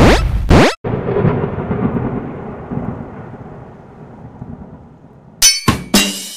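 Edited-in title sound effects: a loud burst with a fast rising whoosh, then a deep rumble that slowly fades over about four seconds. Near the end come a few sharp hits as drum-led music begins.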